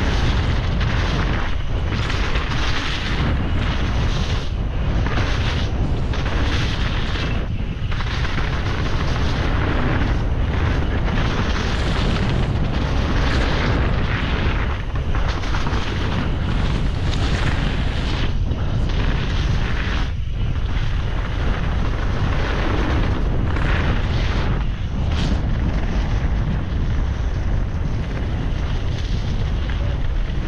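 Wind rushing over an action camera's microphone and mountain bike tyres rolling over dirt during a fast downhill descent, a loud rumble with irregular surges and dips over the bumps.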